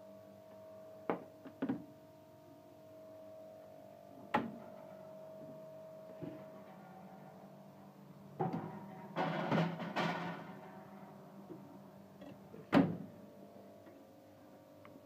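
A metal baking tin knocking and clattering against the oven rack as it is put into an oven, with a few lighter knocks earlier and one sharp knock near the end, the loudest sound. A faint steady hum runs underneath.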